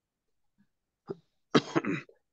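About a second of silence, then a person coughing briefly, loudest near the end.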